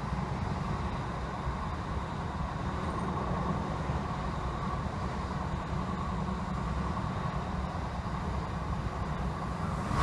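Class 321 electric multiple unit running at speed, heard inside the passenger saloon: a steady rumble of wheels on the rails with a band of higher running noise above it.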